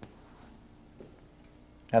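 Chalk scratching faintly on a blackboard as a curved arrow is drawn, with a light tap about a second in. A man's voice starts at the very end.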